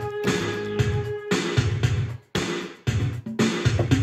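Yamaha PSR-520 keyboard playing a repeating bass line over its built-in drum rhythm, with a note held through the first second or so. The music drops out briefly a little past halfway, then carries on.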